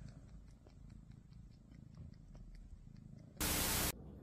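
A cat purring, a low, steady rumble close to the microphone. Near the end, a sudden, loud burst of hiss lasts about half a second.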